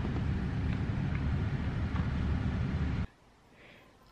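Steady low rumble of car cabin noise with a few faint clicks, which cuts off abruptly about three seconds in, leaving a faint hush.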